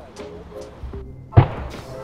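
A bicycle helmet dropped from overhead hits hard-packed ground in a single sharp thud about one and a half seconds in, one of a series of drop-test impacts. Background music with a steady beat plays under it.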